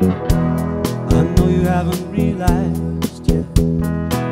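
Live band playing a song: a drum kit keeping a steady beat under bass, guitar and keyboard.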